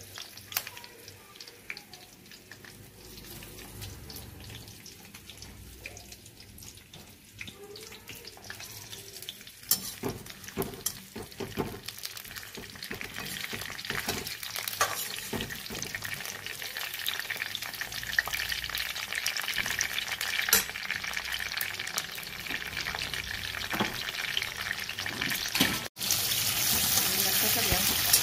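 Capsicum pieces sizzling in hot oil in an aluminium kadai, with a slotted steel spatula scraping and clicking against the pan as they are stirred. The sizzle grows steadily louder as the pan heats, with a brief break near the end.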